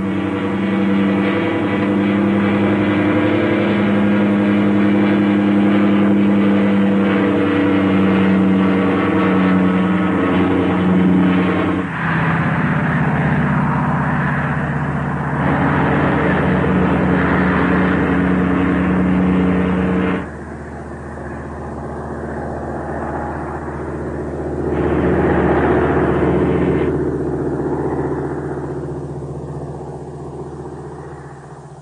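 Single-engine military trainer aircraft's engine droning in flight, its pitch shifting about twelve seconds in, then dropping quieter about twenty seconds in and swelling again a few seconds later as the plane manoeuvres.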